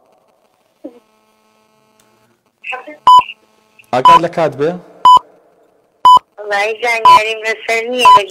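Quiz countdown timer beeping, a short electronic beep about once a second starting about three seconds in, with a voice talking between the beeps.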